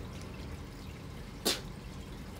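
Quiet, steady trickle of water from an aquarium, with a short sharp noise about one and a half seconds in.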